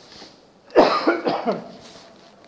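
A man coughs once, a sudden loud burst about three quarters of a second in that trails off within a second, after a faint intake of breath.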